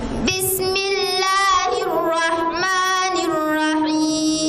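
A young woman's voice reciting the Qur'an in the melodic, drawn-out tajwid style, holding long notes that slide up and down between pitches. The recitation picks up about a third of a second in.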